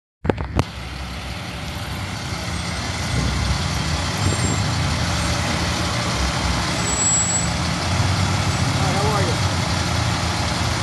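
Fire rescue truck's engine running as the truck drives slowly past, a steady low hum with road noise that grows louder over the first few seconds. A couple of sharp clicks come at the very start, and faint voices are heard near the end.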